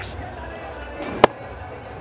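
A single sharp crack about a second in, over a low, steady stadium crowd rumble.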